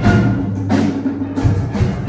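School orchestra playing live: strings and other held instrument tones over drum beats that come in a quick, even rhythm in the second half.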